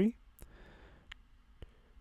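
Quiet room tone with three faint, short clicks spread across two seconds and a soft breath-like hiss about half a second in.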